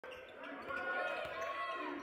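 Live basketball game on a hardwood court: the ball bouncing, with the voices of players and spectators in the gym.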